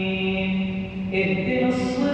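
An imam reciting the Quran aloud in a melodic chant during congregational prayer: one male voice holds a long note, then moves to a new pitch a little past halfway.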